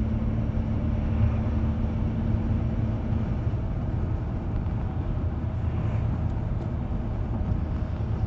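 Steady low rumble of a car heard from inside the cabin, with a faint hum that fades out about three and a half seconds in.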